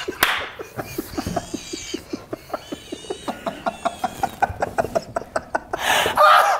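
A man laughing hard. It opens with a sudden loud burst of laughter, then runs on as a rapid train of short laugh pulses, about five a second.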